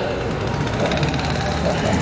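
A steady low rumble like an engine running, heard during a pause in a man's speech.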